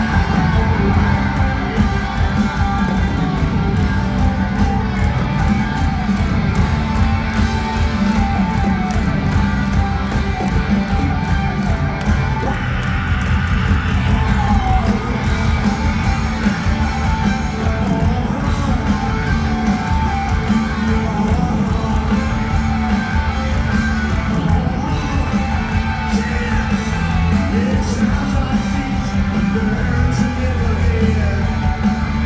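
Loud live rock band playing electric guitars, bass and drums in a stadium, recorded from within the audience, with the crowd yelling over the music.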